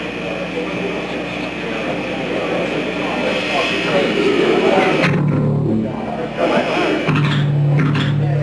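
Crowd talking in a club while electric guitar is played through the stage amps. There are two held low chords, one about five seconds in and another about seven seconds in.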